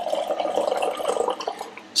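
Beer glugging from a glass bottle into a tasting glass, a steady bubbling pour of a lightly carbonated lager that eases off near the end.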